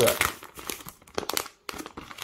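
Paper packaging of a trading-card multipack crinkling and crackling as it is handled and opened, an irregular run of crackles with a brief pause about a second and a half in.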